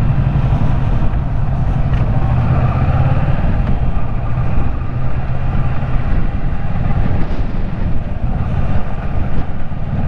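Kawasaki Versys 650 parallel-twin engine running steadily as the motorcycle rides along a street at low speed, with constant wind and road noise on the camera's microphone.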